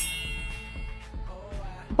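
A bright ding that rings a few clear tones and fades over about a second, over quiet background music.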